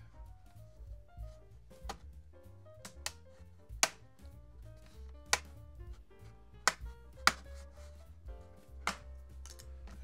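Background music with a soft melody throughout. Over it come several sharp clicks at uneven intervals from the plastic pry pick working along the seam of an HP Omnibook X Flip's bottom cover, snapping its clips loose.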